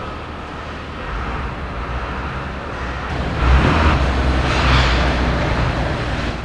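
Street traffic noise: a low vehicle rumble that grows louder, swelling about three and a half seconds in.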